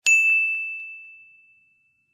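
A single bright ding sound effect: one high ringing tone struck once that fades away over about a second and a half, with silence around it.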